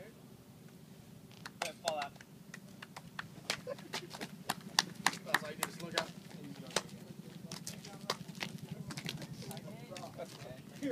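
Several people in boots walking on asphalt: a run of sharp, irregular footsteps starting about one and a half seconds in and thinning out after about seven seconds, over a steady low hum and faint voices.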